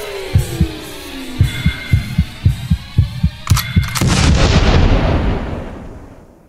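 Produced logo-intro sound design: a falling pitch sweep over low thumps that come quicker and quicker, then a sharp hit about three and a half seconds in, followed by a loud rushing wash that fades out near the end.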